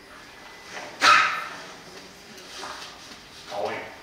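A man blowing his nose hard into a tissue: one sudden loud honk about a second in that fades quickly.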